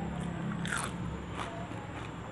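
A person chewing a mouthful of food close to the microphone, with two crisp crunches, the first about two-thirds of a second in and the second about a second and a half in.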